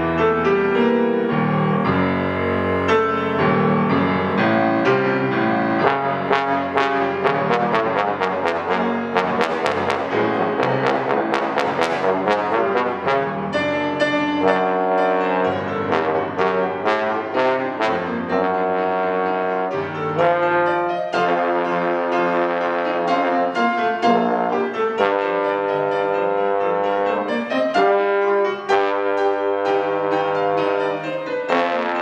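Trombone and piano playing a classical piece together. A busy run of quick piano notes fills the middle, and the trombone plays long held notes over the piano in the second half.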